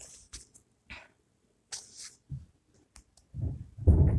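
Short clicks and rustles from a smartphone being handled and tapped close to its microphone, then a louder low rumble of handling noise in the last second or so.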